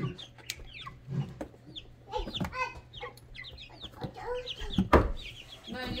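Baby chicks peeping over and over, a stream of short high peeps that each fall in pitch. A sharp thump about five seconds in is the loudest sound.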